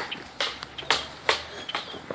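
Footsteps and scuffling on grass: about three short scuffs, spread across the two seconds.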